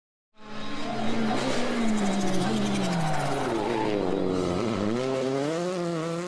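Rally car engine revving, its pitch dipping and climbing again, mixed with steady intro music.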